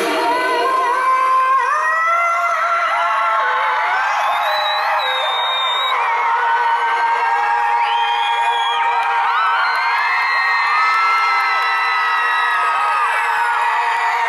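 A woman singing live on a concert stage, belting into a handheld microphone, with a crowd singing and screaming along at high pitch. The sound is thin, with almost no bass.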